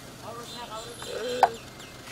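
A man laughing in short, choppy bursts, with one brief sharp tap about one and a half seconds in.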